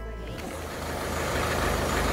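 Background music cuts off shortly in, replaced by steady outdoor street noise with a vehicle engine running, the noise growing slowly louder.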